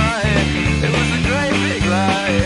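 Rock band recording with a Fender Precision Bass played along on it through a Caline CP-60 Wine Cellar bass driver pedal: a steady driving bass line under a lead line that bends up and down in pitch.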